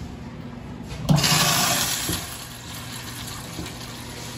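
Acorn stainless steel urinal flushing: a sudden rush of water starts about a second in, is loudest for about a second, then tapers off.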